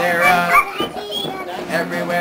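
Children imitating monkey calls: a crowd of short, high-pitched cries that bend up and down in pitch, over a steadily strummed acoustic guitar.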